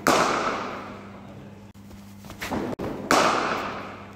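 Cricket ball struck by a bat twice, about three seconds apart, each a loud crack that echoes for about a second in the shed. Fainter knocks come just before the second hit.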